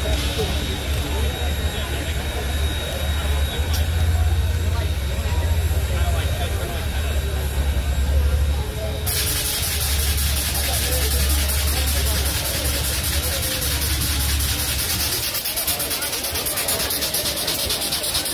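Crowd chatter around the stopped Union Pacific Big Boy No. 4014 articulated steam locomotive over a steady low rumble. About halfway through, a loud, continuous hiss of steam from the locomotive sets in suddenly.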